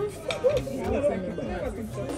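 Indistinct conversation among several people around a dinner table, with one sharp click about half a second in.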